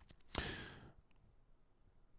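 A man's sigh into a close microphone: a couple of faint mouth clicks, then one short breath out about a third of a second in that fades away.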